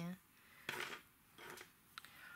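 Faint handling noises from hands at a seed tray and ceramic saucer while sowing pelleted seeds: a short scrape about three quarters of a second in, a softer one about a second later, and a light tick near the end.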